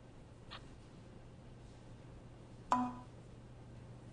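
Quiet room tone with a steady low hum. A little under three seconds in comes a single sharp click with a brief ringing tone.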